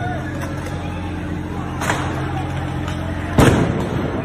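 Sudden loud bang of a police flash-bang (blast-ball) grenade going off about three and a half seconds in, echoing briefly, with a smaller crack about two seconds in. A steady low hum and crowd voices run underneath.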